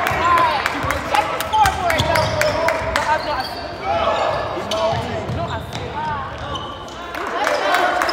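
Basketball bouncing on a hardwood gym floor during play, a series of sharp thuds with other court noises, echoing in the large gym.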